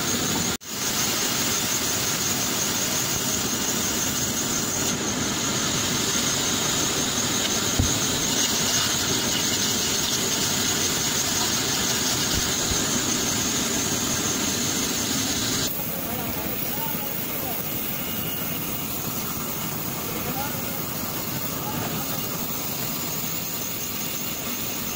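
Large vertical band saw running through a date palm trunk, giving a steady high-pitched whine over a rasping saw noise. About two-thirds of the way in the whine stops and a quieter, steady machine drone remains.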